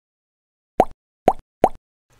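Three short pop sound effects, about half a second apart, each with a quick upward flick in pitch, added in editing as icons pop into view on screen.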